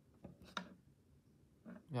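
Mostly quiet room with a few faint, short soft sounds in the first second, then a man's brief spoken "yeah" at the end.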